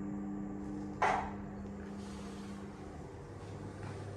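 A steady low mechanical hum, then a single sharp knock with a short ring about a second in; the hum dies away a little before three seconds.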